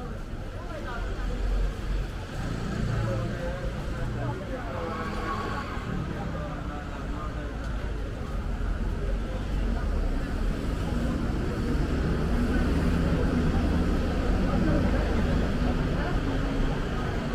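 Busy street ambience: indistinct chatter of passers-by mixed with road traffic. A vehicle engine's low rumble grows louder through the second half.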